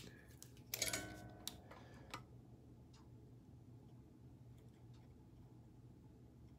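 Faint handling of small cable-connector parts at a soldering bench: a few light clicks over a low steady hum, with one short steady-pitched sound about a second in.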